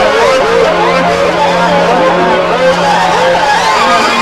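Hard psytrance breakdown: warbling, squiggling synth lines gliding up and down over a held low note, with no kick drum.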